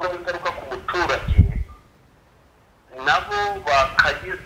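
A person's voice talking in two short stretches, with a pause of about a second in between.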